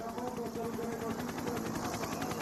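Helicopter rotor beating rapidly and steadily, with a faint steady engine hum underneath.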